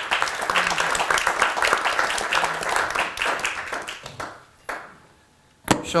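Audience applauding, a dense run of hand claps that thins out and dies away about four to five seconds in.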